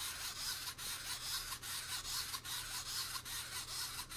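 Wind-up clockwork gearbox of a Zoids Bear Fighter model kit running as the figure walks upright: a steady whirring rasp of plastic gears with regular clicks from the walking mechanism.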